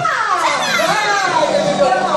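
A high-pitched voice drawing out a long, stylised cry that slides down steeply and then wavers up and down for almost two seconds, like an opera character's exclamation. A faint low steady hum lies under it.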